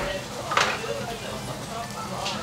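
Indistinct murmur of voices in a busy restaurant dining room.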